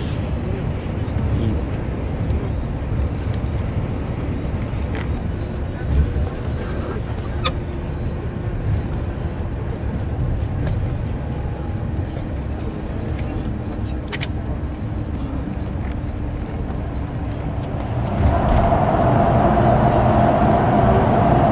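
Engine and tyre rumble heard from inside a coach travelling at motorway speed, steady throughout. Near the end it grows louder, with a droning hum, as the coach enters a road tunnel.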